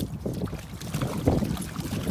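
Dogs wading and splashing through shallow shoreline water: a run of irregular splashes.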